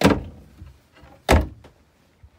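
Solid-wood cabinet doors being shut: two sharp knocks just over a second apart.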